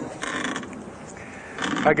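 Scraping, creaking handling noise of a podium microphone being adjusted, in two short spells. A man's voice starts right at the end.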